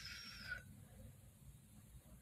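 Near silence: room tone, with a faint, brief hiss in the first half second.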